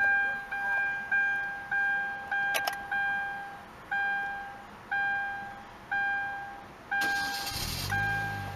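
2010–2013 Kia Forte door-open warning chime, a fading electronic ding repeating first about every 0.6 s, then about once a second: the warning that the driver's door is open with the key in the ignition. Near the end the starter cranks and the engine catches into a low idle while the chime keeps going.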